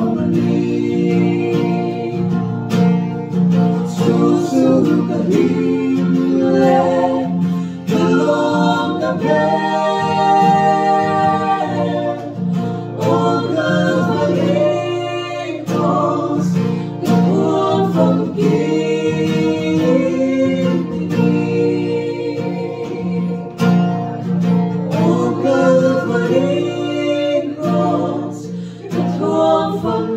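Voices singing a song together, accompanied by an acoustic guitar.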